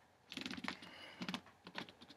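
A quick, irregular run of light clicks and taps, bunched in little clusters.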